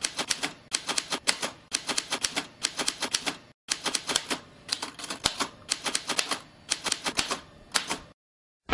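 Manual typewriter typing: typebars striking the paper in quick, irregular runs of sharp clicks, with a brief break about three and a half seconds in.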